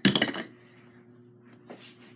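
Hard plastic toy parts clattering onto a wooden tabletop: a quick run of knocks in the first half-second, then quiet with one small click near the end.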